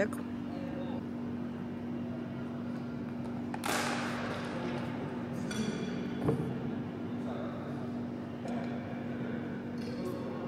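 Plastic food containers and packaging being handled while leftover food is packed away: a rustle about four seconds in, more crinkling, and a light click a little after six seconds, over a steady low hum.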